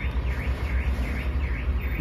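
Truck's reversing alarm chirping at an even pace about three times a second, each chirp dipping and rising in pitch, over the low rumble of the diesel engine as the truck backs up.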